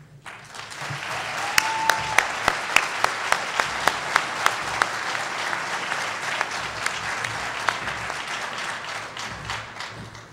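Audience applauding in a large hall. The applause builds up in the first second and tapers off near the end, with one nearby pair of hands clapping sharply for a few seconds. A brief high note sounds about two seconds in.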